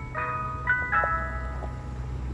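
Ice cream truck playing its jingle through a loudspeaker: an electronic chiming melody of held notes that change pitch every fraction of a second. The low steady hum of the truck's engine runs underneath.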